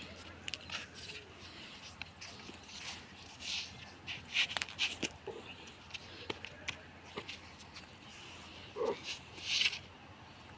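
Two men grappling on concrete: irregular scuffing and rustling of clothing and bodies against the ground, with short breathy bursts and a brief grunt about nine seconds in.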